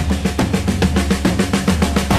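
Background music with a fast, busy drum-kit beat over a steady bass line.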